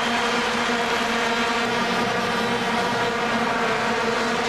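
Vuvuzelas blown by a stadium crowd: many plastic horns sounding together as one steady, unbroken drone on a single note, over general crowd noise.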